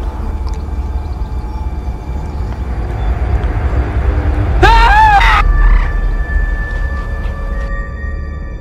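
Horror-trailer score and sound design: a steady low rumbling drone, a loud wavering, cry-like swell about halfway through, then sustained high ringing tones.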